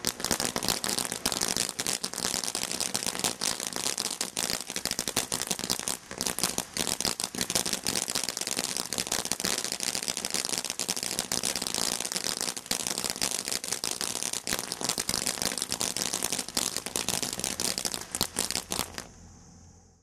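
Glow Worm Party firework fountain crackling densely and rapidly, a fast run of sharp pops from bursting crackle stars. The crackling starts suddenly and dies away about nineteen seconds in as the fountain burns out.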